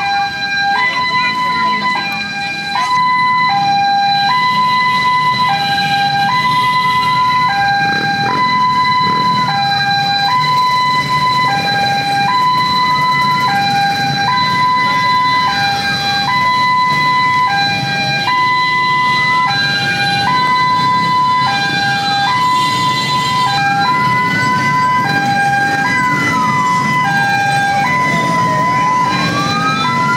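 Vehicle sirens. A two-tone hi-lo siren alternates between two pitches about once a second, and from about eight seconds in a second siren rises and falls in slow wails over it. Underneath is the low running of many motorbike engines.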